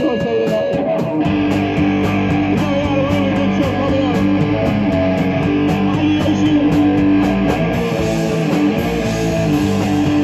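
A live rock band playing: electric guitar, bass guitar and drums, with steady cymbal hits. The low end fills in about a second in as the full band comes in.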